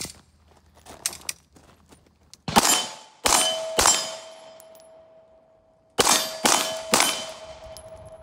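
Beretta 92-series 9mm pistol fired six times, in two quick strings of three, at steel plate targets. Each string is followed by a lingering metallic ring from the struck steel.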